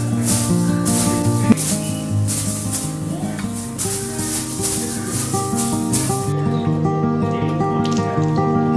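Straw hand broom swishing across a bed sheet in repeated strokes, stopping about six seconds in, over background acoustic guitar music.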